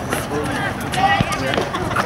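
Background voices of players and spectators at an outdoor futsal game, with one sharp knock a little over a second in.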